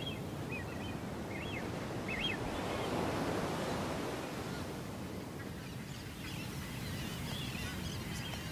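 Surf washing onto a rocky shore, a steady rush that swells gently about three seconds in. A few faint short bird chirps come in the first couple of seconds.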